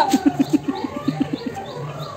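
Birds calling: a quick run of low, pulsed notes, about seven a second, fading out after a second and a half, over fainter repeated chirps.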